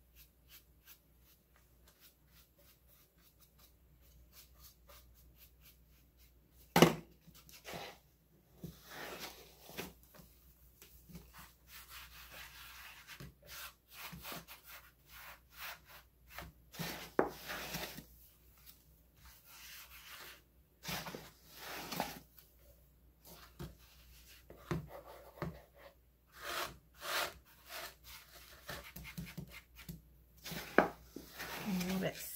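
A bristle chip brush and hands brushing and rubbing dry baking soda off a plastic pumpkin coated in gritty paint paste: irregular scratchy strokes that begin after a sharp knock about seven seconds in.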